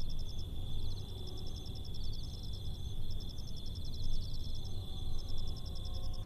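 Night ambience of insects chirping: a steady high trill with runs of rapid, evenly repeated chirps above it, over a constant low rumble.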